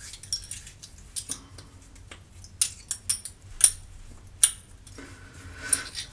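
Small metal objects clinking in cupped hands, with about a dozen irregular, sharp, ringing clinks, most bunched near the middle.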